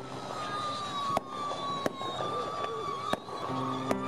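Fireworks going off: about five sharp bangs at irregular intervals, over a long whistling tone that slowly falls in pitch.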